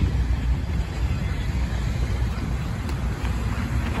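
Steady low rumble of road traffic passing on a multi-lane street.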